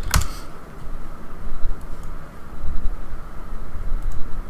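A single sharp click just after the start, then an uneven low rumble with a faint steady hum underneath: room and desk noise with no speech.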